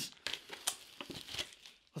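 Clear plastic shrink wrap on a sealed card box crinkling and crackling in the hands, in irregular faint bursts with one sharper crackle under a second in.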